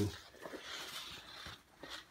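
Soft rustling of a canvas hoodie being handled and moved about, dying away about one and a half seconds in.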